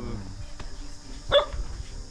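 A dog barks once, a single short sharp bark a little past halfway.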